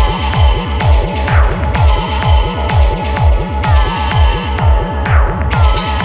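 Electronic techno track: a steady, repeating deep kick-drum beat with falling pitch, high hi-hat ticks and held synth tones, with a swishing noise sweep shortly after a second in and another near the five-second mark.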